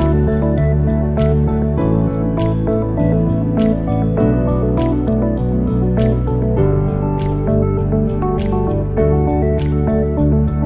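Background music: held, slowly changing chords with a light, clicking beat.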